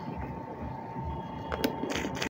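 Fabric sleeve being handled on a table, a soft rustle with two light clicks near the end, over a faint steady hum.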